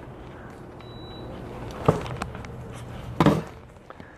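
Air conditioner being switched on: a short high beep about a second in, then two sharp knocks, over a low steady hum.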